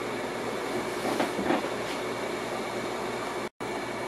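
Steady background room noise with a faint steady hum, a couple of soft handling sounds about a second in, and a brief total cut-out of the sound near the end.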